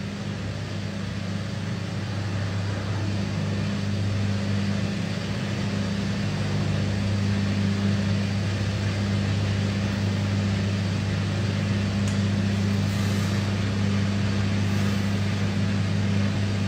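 Steady electrical hum with an even hiss underneath, as of a bathroom ventilation fan running.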